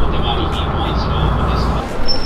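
Busy crowd ambience: indistinct voices of people over a steady low rumble and hiss.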